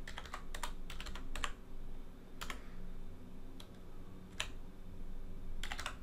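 Typing on a computer keyboard: a quick run of keystrokes in the first second and a half, a few scattered keys through the middle, and another quick run near the end.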